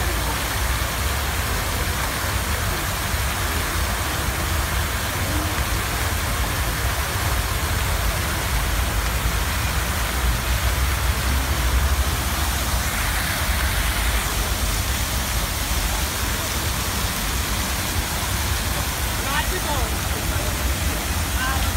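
Multiple jets of an illuminated fountain spraying and splashing water back into the pool: a steady rushing hiss, over a constant low rumble.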